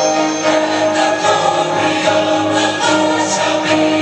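A large church choir singing held notes, accompanied by piano and instruments.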